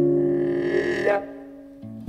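Jazz duo of archtop electric guitar and plunger-muted trombone: a low guitar chord rings while the trombone's note slides upward, then the sound fades away about a second in. A new chord strikes just at the end.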